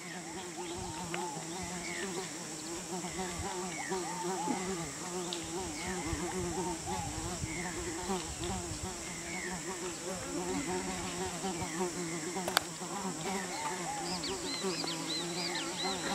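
Insects buzzing, a wavering hum under a steady high insect drone, with a bird repeating short descending chirps about once a second. There is one sharp click about twelve seconds in, and a flurry of bird chirps near the end.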